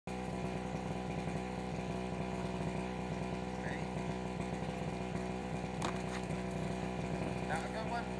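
A small engine runs steadily at an even pitch, with one sharp click about six seconds in.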